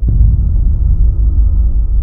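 Trailer sound design: a sudden deep hit at the start, followed by a sustained low rumbling drone with faint ringing tones above it.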